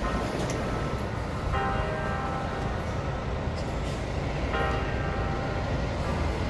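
Steady low rumble of coaches idling at a bus terminal platform. A ringing, chime-like tone sounds three times over it, at the start, about a second and a half in, and about four and a half seconds in.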